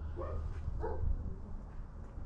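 A dog barking twice, two short barks about half a second apart, over a steady low rumble.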